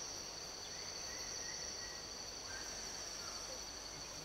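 A steady, high-pitched drone of rainforest insects: two even tones close together, over a faint background hiss.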